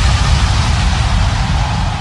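Outro of a K-pop track: a dense rushing noise over a low rumble, with no melody or voice, beginning to fade near the end.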